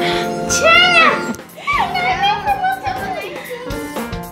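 Young children squealing and calling out playfully over background music: two quick rising-and-falling squeals in the first second, then one long drawn-out call.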